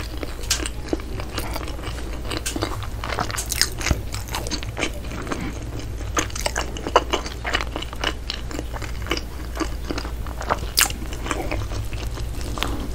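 A person chewing a mouthful of soft bread close to the microphone, with a steady run of small, irregular wet mouth clicks and crackles.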